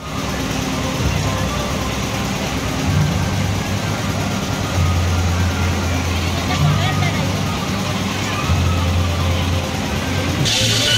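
Fairground din: people talking over a steady low engine hum that swells twice, in the middle and near the end.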